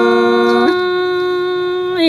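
A singer holding a long, steady vowel in a Tai folk song, stepping up to a higher held note a little under a second in.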